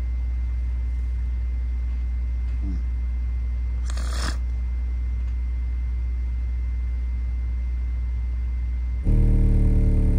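Nemesis Audio NA-8T subwoofer in free air playing a steady, deep test tone at about 20 Hz from a tone-generator app. About nine seconds in the tone suddenly gets much louder and harsher, with many overtones, as the drive rises and the cone moves hard. There is a brief rustle at about four seconds.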